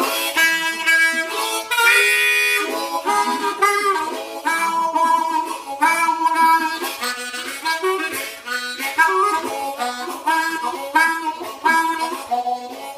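Hohner Meisterklasse ten-hole diatonic harmonica in A, played as a blues solo with the hands cupped around it. A long held chord comes about two seconds in, followed by short, repeated rhythmic phrases.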